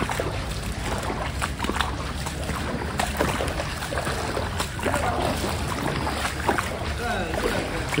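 Footsteps wading through shallow floodwater, with irregular sloshing splashes over a steady wash of outdoor noise.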